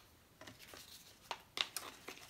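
Faint handling of a decorated paper envelope: a soft paper rustle, then a few light clicks and taps in quick succession as it is picked up off the mat.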